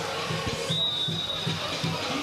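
Referee's whistle blown in one long, steady blast starting about two-thirds of a second in, stopping play for dangerous play. Underneath is stadium ambience with a steady drum beat from the stands, about four beats a second.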